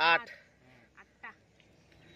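A man's loud, drawn-out shout of a number as he counts aloud, ending just after the start. After that it is quiet, with two faint short voice sounds about a second in.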